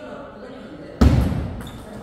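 Table tennis rally with a sudden loud thump about a second in that fades over about half a second.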